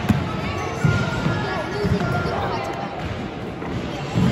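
Basketball dribbled on a wooden sports-hall floor: three heavy bounces about a second apart in the first two seconds, with short high squeaks of trainers on the court and voices around the hall.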